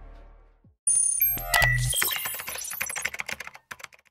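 Background music fading out, then the sound effects of an animated video transition. About a second in comes a sudden electronic burst with high steady tones, followed by a fast run of clicks, like typing, that thins out and stops just before the end.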